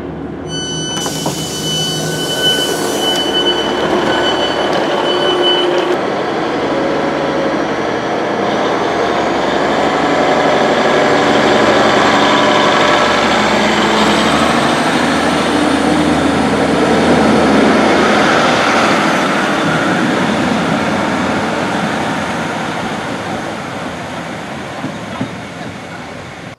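Class 150 Sprinter diesel multiple unit departing: steady door warning tones for several seconds, then the diesel engines running up with a rising whine as the train pulls away, fading as it draws off.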